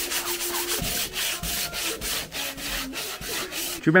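Hand sanding of a wooden panel with sandpaper: quick back-and-forth rubbing strokes, about four to five a second, preparing the old painted surface for repainting. The strokes stop near the end as a voice begins.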